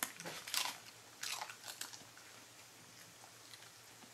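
Keeshond dog crunching a pretzel nub in its teeth: a quick run of loud crunches in the first two seconds, then only faint chewing clicks.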